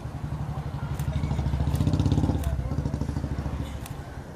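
A motor vehicle engine passing close by, swelling to a peak about two seconds in and then fading, over faint crowd voices.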